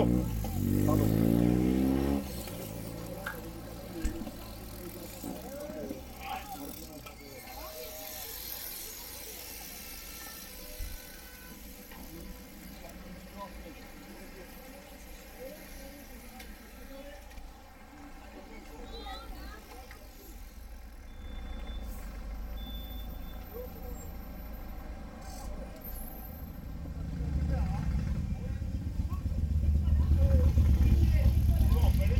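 A motor vehicle passes close by at the very start, its engine fading within about two seconds. Quiet roadside ambience follows, then another engine rumble grows louder over the last few seconds.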